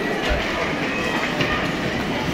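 Ice hockey play in an indoor rink: skates scraping and carving on the ice with a few sharp clacks of sticks and puck, over a steady wash of arena noise.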